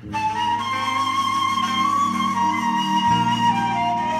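Folk-ensemble instrumental music starting abruptly: a flute-like wind instrument holding a slowly bending melody over sustained low notes, the bass note changing about three seconds in.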